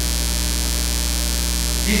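Steady electrical mains hum in the sound feed, a low buzz with a few fainter higher tones above it, holding at an even level. A man's voice starts right at the end.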